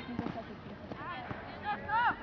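Distant voices of players and spectators calling out across a soccer field, with a short shout near the end.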